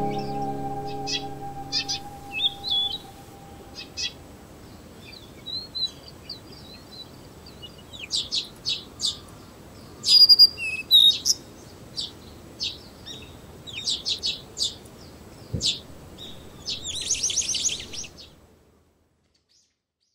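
Small birds chirping: many short, high calls scattered through, loudest about halfway, with a quick trill near the end, over a faint outdoor hiss. Background music fades out over the first few seconds, and everything cuts to silence shortly before the end.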